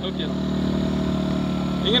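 Generator engine running at a steady speed, an even, unchanging hum.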